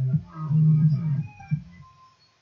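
Electronic background music with a pitched bass line, which stops abruptly at the end.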